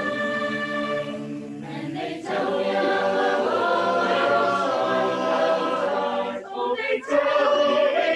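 Mixed student choir singing a cappella in held chords. There is a short break about two seconds in, after which the singing grows louder, and a brief gap near the end.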